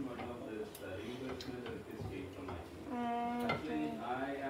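A person's voice, talking or vocalising in short bits that the transcript does not catch, with one held note about three seconds in. A few light clicks are heard along with it.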